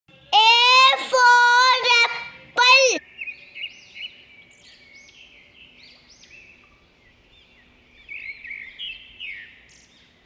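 A high-pitched child-like voice calls out three short phrases, then birds chirp in a steady background of quick rising tweets, busier near the end.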